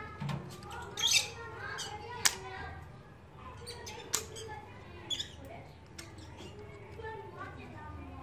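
Small utility knife paring a green mango scion, a few sharp clicks and short scrapes as slivers are shaved off to thin the cut end for grafting. Faint voices are in the background.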